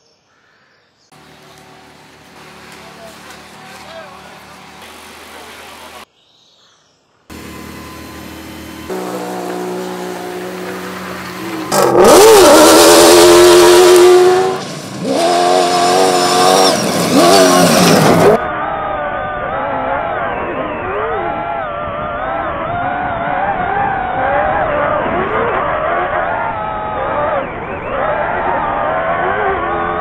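Toyota Hilux rally truck engine revving hard and changing pitch as it races along a dirt track, in several edited takes; the loudest pass comes about twelve seconds in, with the pitch swooping up and then down. Later the engine sound is muffled and keeps rising and falling with the throttle.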